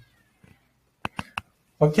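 A whiteboard marker tapping the board three times in quick succession, about a second in: short, sharp plastic taps, after a moment of near silence.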